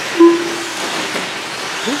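Electric 1/10 short course RC trucks with 13.5-turn brushless motors racing on a dirt track, heard as a steady hiss of motors and tyres. A short, loud steady tone comes about a quarter second in.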